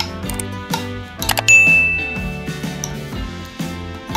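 Background music with a bell-like ding sound effect about a second and a half in: one clear high tone that starts sharply and fades over about a second, just after a few short clicks.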